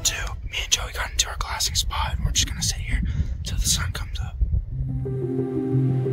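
A man whispering in short bursts over a low rumble. About two-thirds of the way through, the whispering stops and slow ambient background music with long held notes comes in.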